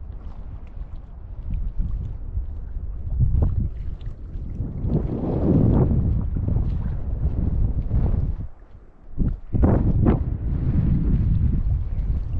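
Wind buffeting the microphone: a gusty low rumble that swells in the middle, drops away briefly about three-quarters through, then returns.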